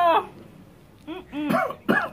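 A dog barking several short barks in quick succession, starting about a second in, after the tail of a laugh.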